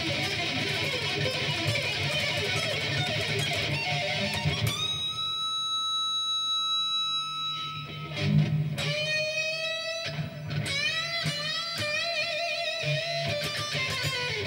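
B.C. Rich electric guitar played as an improvised solo. Fast riffing for the first few seconds gives way to one long held high note, then to a run of quick lead notes with string bends and vibrato.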